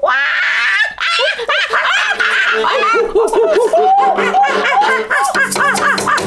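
People imitating chimpanzee hoots, a quick series of rising and falling 'ooh' calls, mixed with laughter.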